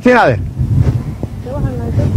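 A voice speaks briefly at the start and a faint phrase comes near the end, over a steady low rumbling background noise.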